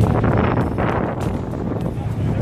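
Wind blowing on the microphone, a steady low rumble with a rushing noise over it.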